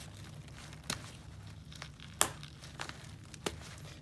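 Plastic clicks from a Therm-a-Rest NeoAir XTherm WingLock valve as its cap is pressed on and off to test the fit after the tight rim was scraped down, with the pad's fabric crinkling under the hands. Three sharp clicks, the loudest about two seconds in.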